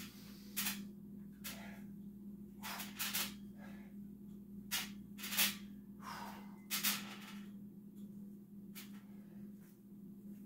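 A person breathing hard in short, sharp exhalations, about seven spread unevenly over several seconds, while working through burpees, over a steady low hum.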